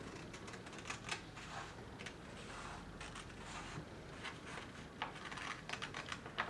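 Scissors cutting pattern paper: faint, irregular snips and clicks of the blades, with the paper rustling as it is turned.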